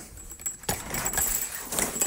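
A jangling, rattling noise close to the microphone, starting a little under a second in and lasting about a second.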